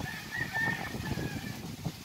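A distant bird's call: one held, slightly wavering high note a little over a second long, heard over a low rumbling background.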